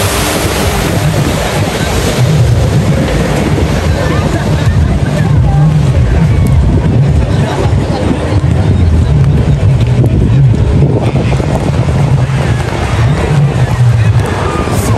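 Wind rumbling on the microphone over the steady drone of a jet ski and a motorboat running on the water, with faint voices in the background.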